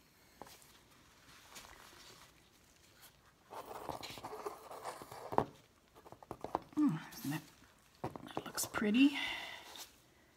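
A small canvas being lifted and tilted in gloved hands, with rustling handling noise and a sharp knock about halfway through. Short murmured voice sounds come in the later seconds.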